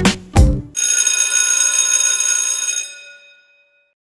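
Short musical logo sting: a deep impact, then a bright shimmering chime that rings and fades away over about three seconds.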